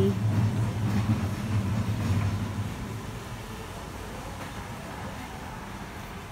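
Low rumbling background noise of a shop interior, heaviest for the first two seconds or so and then fading to a quieter, even hum.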